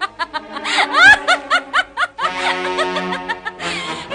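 A cartoon character's laugh, a fast run of short syllables about five a second, over background music. About two seconds in the laugh stops and a held music chord carries on.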